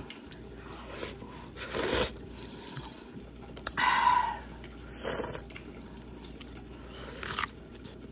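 Close-up eating sounds of a person eating instant udon noodles: several short separate bursts of slurping and chewing spread through, with one sharp click a little before the middle.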